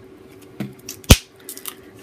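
A single sharp plastic click about a second in, the flip-top cap of a plastic acrylic paint tube snapping open, with a few faint handling noises around it.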